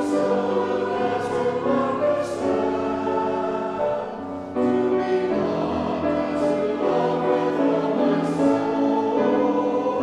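A mixed choir of men and women singing in held notes, with a short break between phrases about four seconds in.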